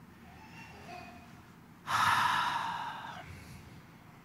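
A man's long sigh close to a handheld microphone. It starts suddenly about two seconds in and fades away over about a second and a half.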